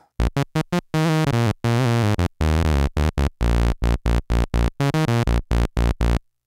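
Arturia MicroBrute analog monophonic synthesizer playing a low sawtooth-wave bass line. The line is a run of short staccato notes, with a couple of longer held notes about two to three seconds in.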